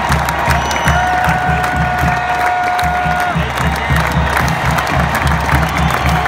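Marching band playing over a cheering stadium crowd, with a steady low drum beat; a long note is held for about two seconds in the middle.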